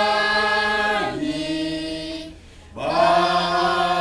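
A family group of men, women and children singing a praise hymn together without instruments, holding long notes, with a short gap between two phrases a little past halfway.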